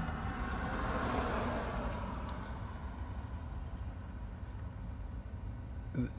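Steady low rumble of vehicle noise heard from inside a stopped car, with a rushing hiss that fades away over the first two seconds.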